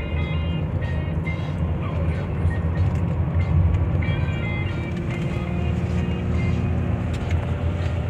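Steady low road and engine rumble inside a moving car, with music playing over it in short runs of high notes.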